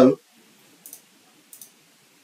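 Two faint computer mouse clicks, about a second in and again about half a second later.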